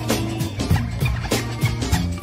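Band music: a bass line under a steady drum beat of about three strokes a second, with short high-pitched chirps coming back every half second or so.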